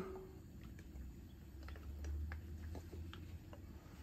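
Grapeseed oil poured onto a preheated steel flat-top griddle, with faint scattered ticks and pops from the oil landing on the hot surface, over a low rumble.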